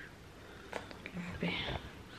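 A woman's brief soft murmur and a breathy exhale in a pause between sentences, with a few faint clicks a little under a second in.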